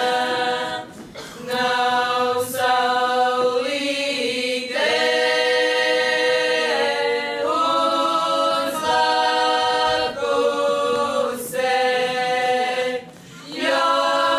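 A Latgalian women's folk ensemble singing unaccompanied in several voices. The phrases are long held notes, broken by a short breath pause about a second in and another near the end.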